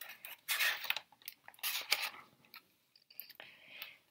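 Paper rustling as a page of a large picture book is turned, in a few short crinkly bursts.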